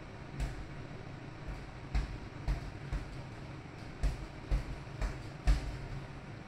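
Boxing gloves punching a double-end bag: about eight sharp hits at uneven intervals, some coming in quick pairs, over a steady low hum.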